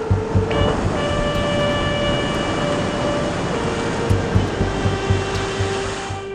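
Loud, steady rush of churning sea water and surf that starts and cuts off abruptly. Several held electric-trumpet tones sound over it, one stepping down in pitch partway through, with a low pulse underneath.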